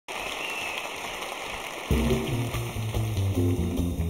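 Audience applause, then about two seconds in a band with orchestra starts playing, led by a stepping bass line.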